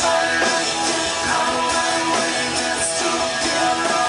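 Live rock band playing loud, with electric guitar and drums, heard from among the crowd.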